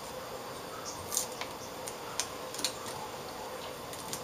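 Hands pressing and smoothing a piece of black tape over a wire at the corner of an LCD panel's metal back frame: a few brief scratchy rustles and light clicks over a faint steady hum.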